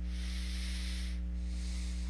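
Steady low electrical hum with a layer of hiss from the recording, the hiss fading briefly a little after a second in.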